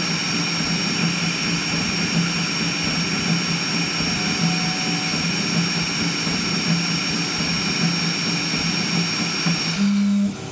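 A high-speed crossed-gantry 3D printer running, its stepper motors and cooling fans making a steady whir with a fluttering low hum from the fast print moves. A constant high-pitched whine runs over it and cuts off just before the end.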